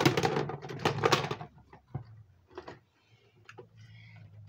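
Handling noise: a burst of rustling and knocking for the first second and a half, then scattered light clicks and taps.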